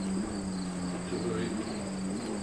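A steady low hum with a thin, high-pitched whine above it, holding level throughout, with no clear voice.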